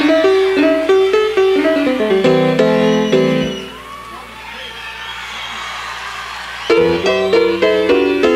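Guitar picked in quick runs of single notes, a descending phrase over the first few seconds, then a quieter pause, then a fresh run of notes near the end.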